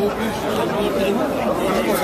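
Speech only: people talking, with the chatter of a street crowd around.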